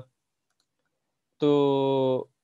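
Speech only: a gap of dead silence, then a speaker drawing out the word 'to' for about a second as a hesitation.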